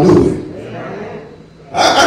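A man's loud preaching voice through a handheld microphone: a loud outburst at the start that quickly falls away, a quieter stretch, then loud speech again near the end.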